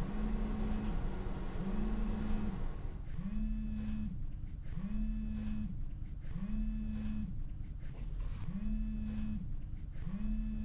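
Mobile phone vibrating on a wooden table for an incoming call: a low, even buzz in pulses of just under a second, about one every 1.2 seconds.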